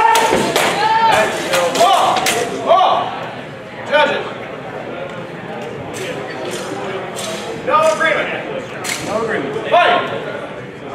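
Steel longswords clashing and striking in a quick flurry of sharp clacks over the first three seconds, with a few more single sharp hits later, and men's shouts over them.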